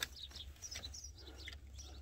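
Faint bird chirps, a few short high calls in the first second or so, over a low steady background hum.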